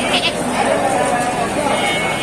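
A short, high-pitched bleat from a young sheep or goat near the start, over a steady bed of crowd voices and chatter.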